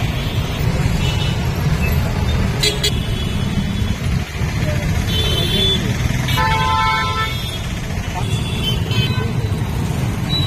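Busy street traffic with auto-rickshaws and motorcycles running steadily. A vehicle horn honks for about a second a little past the middle, among shorter honks.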